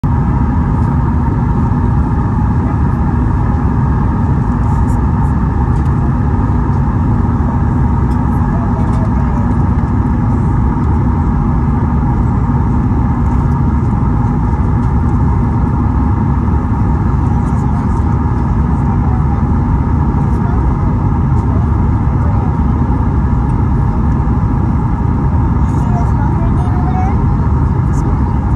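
Steady cabin roar of a Boeing 737-8 MAX on approach, heard from a window seat beside its CFM LEAP-1B engine: a deep, even rumble with a couple of held tones running through it.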